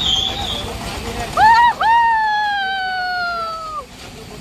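People screaming on a swinging-boat fairground ride: a short high cry, then one long high scream of about two seconds that slowly falls in pitch.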